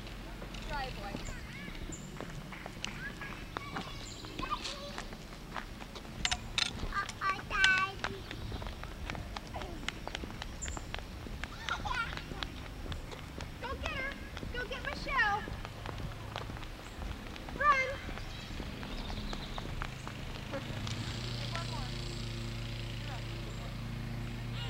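Young children's high-pitched wordless calls and squeals in short scattered bursts, loudest about a third of the way in and again near three-quarters through, over a steady low hum.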